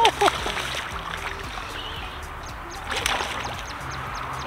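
A hooked bass splashing and thrashing at the water's surface, with a louder burst of splashing about three seconds in.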